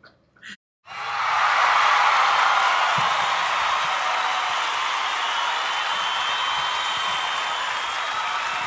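A crowd applauding and cheering, as a recorded effect. It swells in about a second in and then holds steady.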